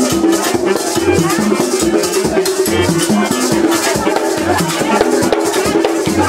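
Haitian Vodou ceremonial music: drums beat a continuous rhythm while a rattle is shaken over it.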